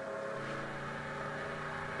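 Motorcycle engine sound effect from an animated trailer, running at a steady pitch.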